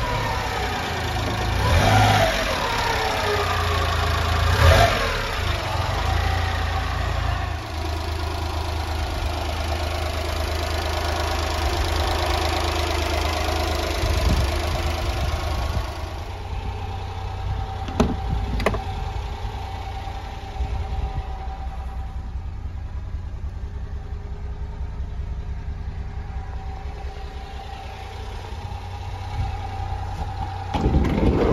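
1996 Honda Acty van's small three-cylinder engine running at idle, a steady low rumble, with two short rises in pitch in the first five seconds; it becomes quieter about halfway through, and there is a single sharp click a couple of seconds later.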